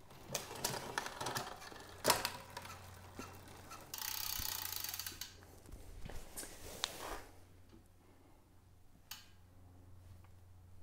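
Bicycle drivetrain worked by hand: chain and crank clicking and rattling as the chain is moved onto the large chainring, with a denser rattle lasting about a second near the middle and a sharp single click near the end.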